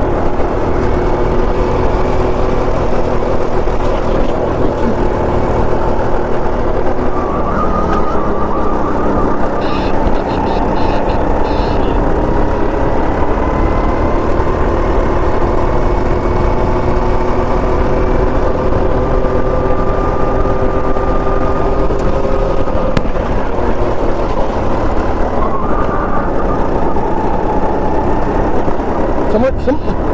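Go-kart running at speed on track, its motor giving a steady whine whose pitch drifts slowly up and down with throttle and speed, over a constant rush of wind on the onboard camera.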